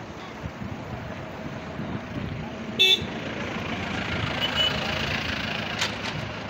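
Steady rush of muddy floodwater flowing past the bridge. About three seconds in, a vehicle horn gives one short toot.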